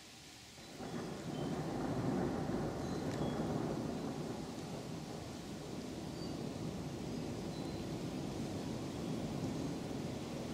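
Thunder rumbling: a long rolling peal breaks in about a second in, swells to its loudest within the next second and keeps rumbling on without stopping.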